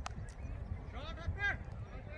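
A sharp crack of a cricket bat striking the ball at the very start, struck for four. About a second later come a few short calls in quick succession, over a low rumble of wind on the microphone.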